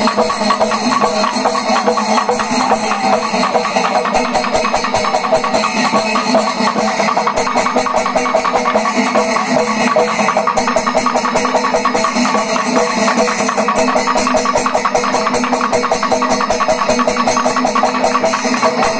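Panchavadyam temple ensemble playing loud and steady: a fast, unbroken stream of timila and maddalam drum strokes, with ilathalam cymbals ringing over them.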